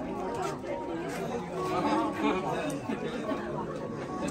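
Background chatter of many people talking at once, overlapping conversations with no single voice standing out.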